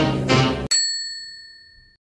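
Closing jingle: the last short brass-like chord of an outro sting, then about two-thirds of a second in a single bright bell-like ding that rings on and fades away.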